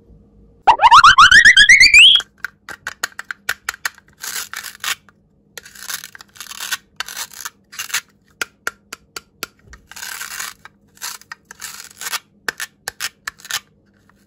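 A loud rising cartoon whistle sound effect lasting about a second and a half, followed by the clicks and rasping of a plastic toy dragon fruit being handled, its velcro-joined halves pulled apart and pressed together several times.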